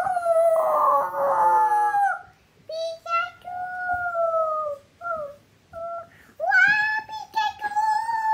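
A child singing in a high voice: long held notes that droop at their ends, in phrases of one to two seconds with short gaps and a few brief notes in between.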